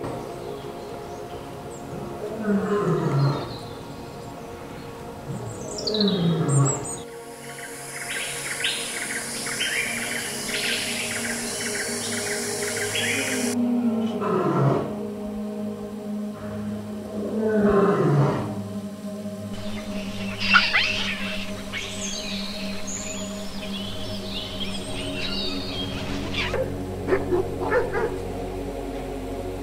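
Lions roaring: four long calls, each falling in pitch, over steady background music, with birds chirping between the calls.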